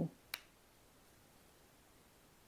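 A single sharp click from the plastic diamond-painting drill pen and drill tray being worked, about a third of a second in, then quiet room tone.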